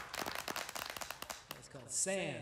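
Light, scattered hand clapping from a small audience: quick, irregular claps that die out about a second and a half in.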